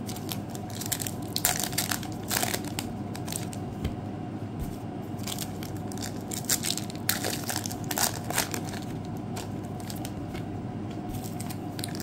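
Foil trading-card pack wrappers crinkling and tearing as they are peeled open by hand, in irregular bursts of crackle.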